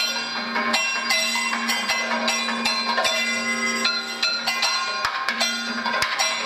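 Kathakali music accompaniment: rapid drum strokes mixed with ringing metal percussion, over a steady low sustained tone.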